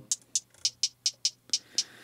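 Hi-hat samples triggered from the pads of an Akai MPC One drum machine: about eight short, crisp ticks at roughly four a second, some pitched higher and some lower.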